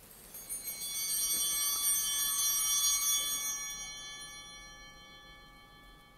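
Altar bells rung at the elevation of the chalice after the consecration: a cluster of bright, high ringing tones that builds over the first second, holds, then fades out over the last few seconds.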